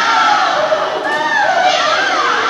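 A group of young children shouting and squealing together, many high voices overlapping.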